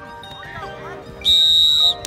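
A single loud whistle blast, one steady high tone lasting about two-thirds of a second, starting a little over a second in, over background music.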